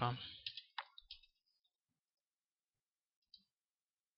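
A few computer mouse clicks in quick succession within the first second or so, and one faint click near the end.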